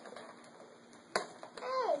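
Plastic Twinkie wrapper being peeled open by hand: faint crinkling, then one sharp snap a little past one second in.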